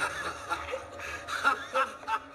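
A man's strangled, gasping vocal sounds in a string of short bursts as a hand chokes him by the throat, the loudest about a second and a half in.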